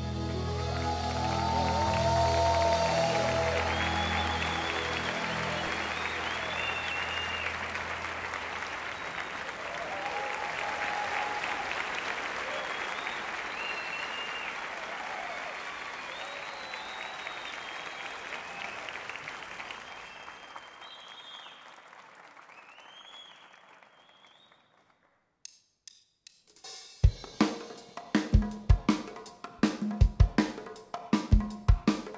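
Concert audience applauding as the band's final sustained chord fades out over the first several seconds. The applause slowly dies away to a brief hush, and a few seconds before the end a conga player starts a rhythm.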